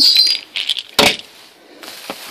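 Plastic pill bottles being handled and set down, with one sharp clack about a second in, among light rustling of plastic shopping bags.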